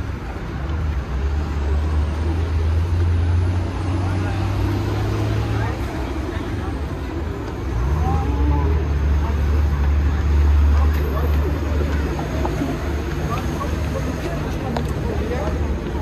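Busy street ambience: a steady low drone of road traffic that eases off briefly about six seconds in, with people chatting nearby.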